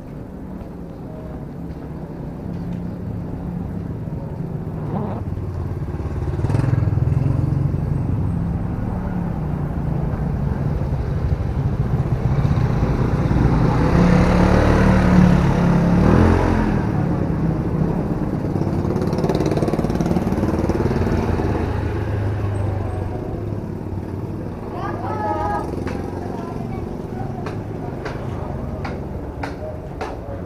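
A motor scooter's small engine running at low speed as it rides past close by, growing louder to a peak about halfway and then slowly fading.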